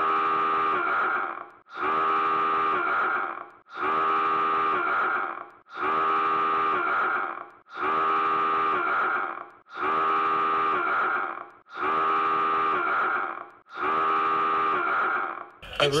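A looped vocal groan: the same drawn-out moaning voice, about a second and a half long, repeated eight times at an even two-second pace.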